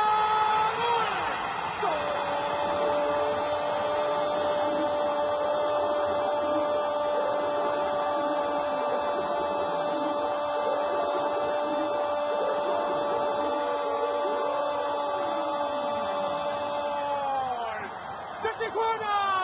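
A Spanish-language TV football commentator's drawn-out goal cry, one long 'gol' shout held on a single steady pitch for about fifteen seconds. It rises at the start and falls away near the end, over noisy background sound.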